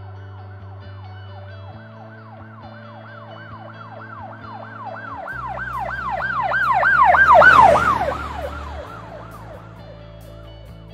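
A siren wailing rapidly up and down, about three times a second, swelling to its loudest about seven seconds in and then fading away, over background music with long held low notes.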